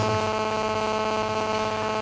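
Steady electrical mains hum with buzzy overtones, holding one even pitch throughout.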